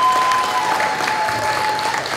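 Audience applauding, with a couple of long, high calls held over the clapping.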